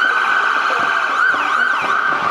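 A siren sounding: a high steady wail, held after rising into pitch just before, with a brief dip in pitch partway through and fainter up-and-down sweeping siren tones above it.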